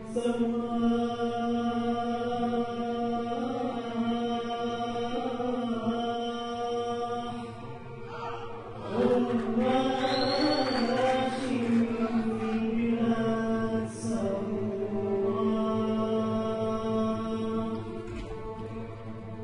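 A male vocalist sings an Arabic song in long held notes, with an ornamented, bending run in the middle, over an Arab music ensemble of strings and choir.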